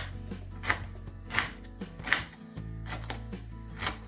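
Kitchen knife slicing through a peeled broccoli stem onto a wooden cutting board, a crisp cut about every three quarters of a second.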